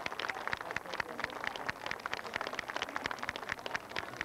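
Audience in the stands clapping: an uneven patter of many separate hand claps.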